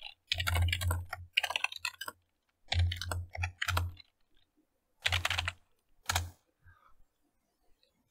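Typing on a computer keyboard: four quick runs of keystrokes with short pauses between them, then quiet for about the last two seconds.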